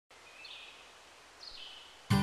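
Faint outdoor ambience with a bird calling twice, each call high and short and sliding down a little.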